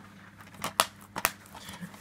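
Plastic DVD case being handled, giving a run of light clicks and snaps, about half a dozen spread over two seconds.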